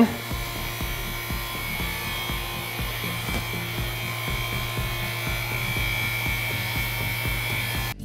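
Vacuum pump running steadily with a low hum as it pumps the chamber down toward low pressure, cutting off suddenly near the end.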